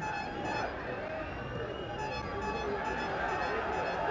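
Football stadium ambience from a TV broadcast: a steady crowd bed with fans singing or chanting and a few slow rising-and-falling tones over it.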